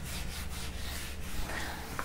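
Handheld eraser wiping a whiteboard in quick, repeated rubbing strokes.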